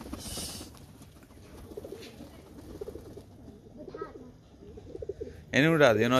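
Domestic pigeons cooing softly, a low wavering murmur, followed by a person's loud call near the end.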